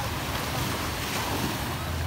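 Small surf washing onto a sandy beach in a steady wash, with wind rumbling on the microphone.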